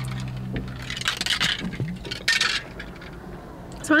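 A plastic shaker bottle being drunk from and handled: a click near the start, then two short scraping rattles about one and two seconds in. A low steady hum fades out about halfway.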